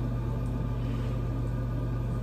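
A steady low hum with faint even hiss, unchanging throughout: constant background machine or room noise with no speech.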